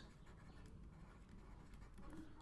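Faint scratching of a stylus writing on a tablet, with no speech.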